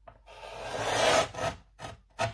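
Guillotine-style paper trimmer slicing through a sheet of card paper: a rasping cut that builds for about a second and stops sharply, followed by two short clicks as the blade arm settles.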